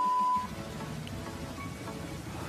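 A steady, pure test-tone beep lasting about half a second, like the tone played over a TV 'please stand by' test card, then faint background noise.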